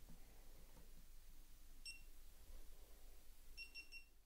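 Near silence: faint room tone, with faint short electronic beeps about two seconds in and again near the end.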